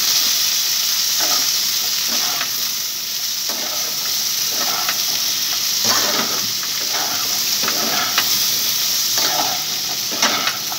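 Potatoes frying in hot oil in a pan, giving a steady sizzle. They are stirred with a spatula, with irregular scraping strokes about once a second.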